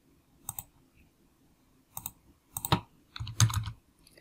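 Computer keyboard keystrokes typing a short number: a few separate clicks, then a quicker run of keystrokes with a low thump in the last second or so.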